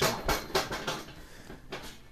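Handling noise: a quick run of light clicks, knocks and rustles from hard objects being handled on a workbench, loudest in the first second, with a couple of lighter clicks near the end.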